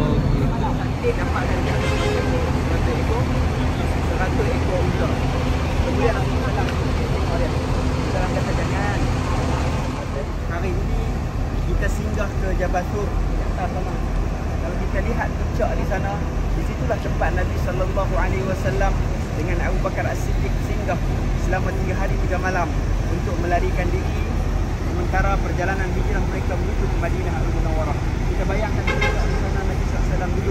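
Steady low rumble of a running vehicle under indistinct chatter of several voices. A faint low hum drops out about ten seconds in.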